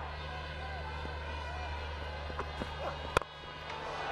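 Stadium crowd murmur with faint distant voices, then a single sharp crack of a cricket bat striking the ball about three seconds in.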